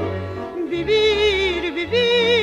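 Music from a 1956 Spanish musical-theatre recording: a woman's voice holding long notes with wide vibrato over orchestral accompaniment, the held notes growing louder about a second in.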